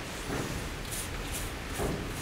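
Soft, faint swishes of a brush spreading underseal inside a car's rear wheel arch, a few strokes about half a second apart, over a low steady room rumble.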